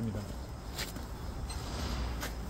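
Low steady outdoor background noise with two faint short knocks, one about a second in and one near the end.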